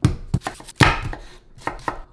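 Chef's knife chopping an onion on a wooden cutting board: a run of irregular knocks, the loudest a little under a second in.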